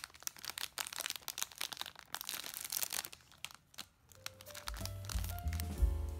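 Thin plastic bread wrapper crinkling and rustling in irregular bursts as it is handled and opened. About four seconds in, background music with a bass line comes in.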